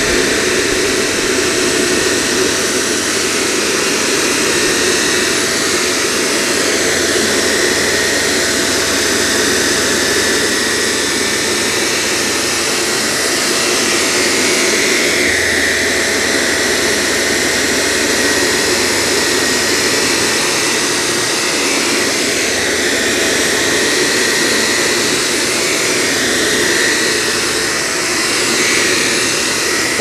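Shark Apex Powered Lift-Away DuoClean upright vacuum with Zero-M brush roll running while pushed over a low-pile area rug: a loud, steady rush of suction with a high whine that drifts a little in pitch.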